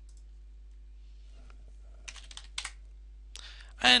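A short burst of keystrokes on a computer keyboard, a few taps about halfway through, typing a short name into a program prompt and pressing Enter, over a faint steady hum.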